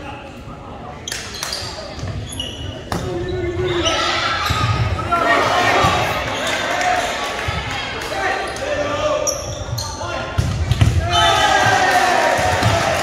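Volleyball being served and struck several times in a gym, with sharp smacks of the ball and short high squeaks of sneakers on the hardwood floor. Players and spectators shout and cheer, loudest in the middle and near the end, all echoing in the hall.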